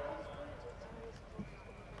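Faint hoofbeats of a pony cantering on grass.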